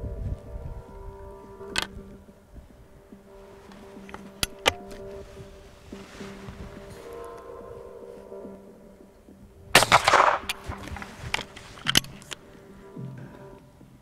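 A single shotgun shot about ten seconds in, one sharp crack with a short ringing tail: a 32-gram steel-shot cartridge fired into a ballistic gel block. Before it come a few faint clicks, under a quiet steady background music bed.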